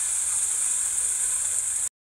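Steady hiss of water spilling down the ice wall and splashing into the pool at its foot, cut off suddenly to silence near the end.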